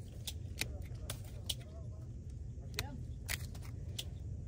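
Grape-trimming snips cutting dead and damaged berries out of a bunch of red table grapes: several sharp, short snips at uneven intervals over a steady low rumble.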